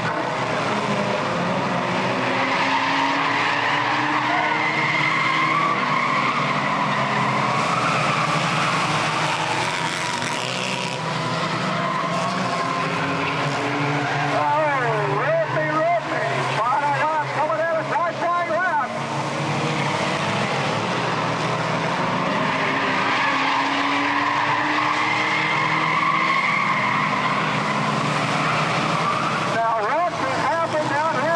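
A pack of front-wheel-drive compact race cars running at high revs on a paved oval, the engine note swelling and fading as they pass. A wavering tire squeal runs for a few seconds about halfway through.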